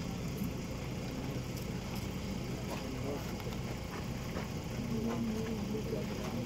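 Low, indistinct talk among a group of people over a steady low hum, one voice becoming clearer near the end.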